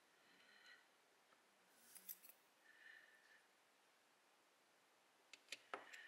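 Faint, sparse metallic ticks and clicks from steel tweezers and small brass lock pins and parts being handled, with a cluster of sharper clicks near the end.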